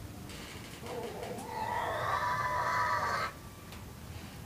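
A single drawn-out animal call, rising at first and then held for about two seconds before cutting off abruptly.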